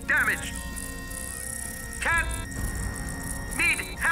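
Cartoon sound effect of a garbled distress call breaking up over a spaceship's radio: short warbling voice-like chirps, one near the start, one about halfway and one near the end, over static hiss and steady electronic tones, with background music.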